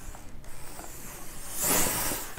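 Clothes iron and cotton fabric being handled on a pressing table: soft clicks and rustling as the iron is lifted off and set aside, with a short louder rustle near the end.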